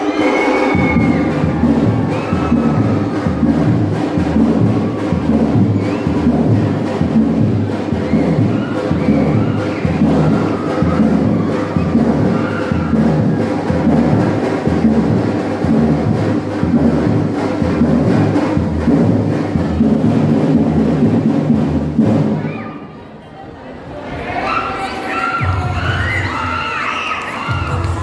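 Music with a steady, heavy bass beat, with a crowd cheering underneath; the music stops about 22 seconds in. A crowd of children and adults then shouts and cheers loudly to the end.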